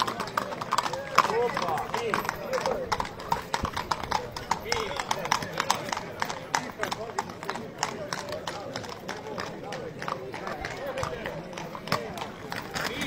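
Hooves of harnessed carriage horses clopping on an asphalt road as the teams trot past, a quick, uneven run of clops throughout, over crowd voices.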